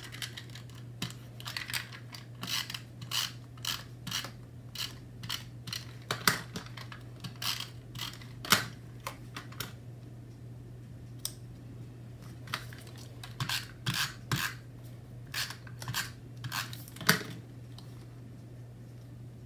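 Paper die-cut flower pieces being handled, pressed and stuck down on a notebook page with a tape runner: irregular short crinkles, taps and clicks, over a steady low hum.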